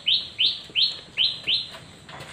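A bird calling a quick, even series of five short chirps, each sliding down in pitch, then stopping shortly before the end.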